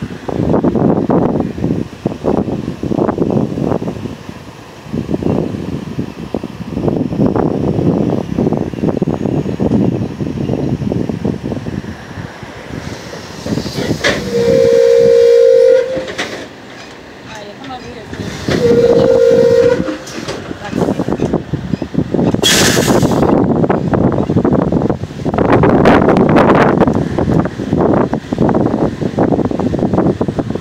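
A two-tone horn blown twice, each blast about a second and a half, around the middle, over gusty low rumble of wind on the microphone. A short sharp hiss follows a few seconds after the second blast.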